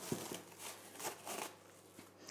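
Plastic cling film crinkling in a few faint rustles as it is unwrapped from a roll of cookie dough.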